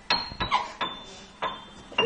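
Four sharp clinks spread over two seconds, some followed by a brief high ringing tone.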